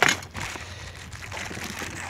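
Clear plastic packaging around a cord reel rustling and crinkling as it is handled.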